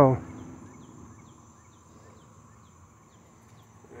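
Faint insect sound: a steady high-pitched drone with a string of short falling chirps, about two or three a second.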